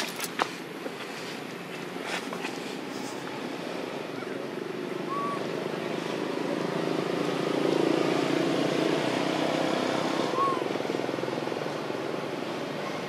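A steady, engine-like hum in the background swells from about the middle and eases off near the end, like a vehicle passing at a distance. A few faint short chirps sound over it.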